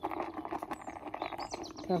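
Steady rustling and crackling of close handling: a newborn lamb held against a knitted jumper while iodine from a jar is put on its navel.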